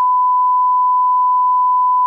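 One long, steady electronic beep at a single pitch of about 1 kHz: a censor bleep edited in over the recorded speech.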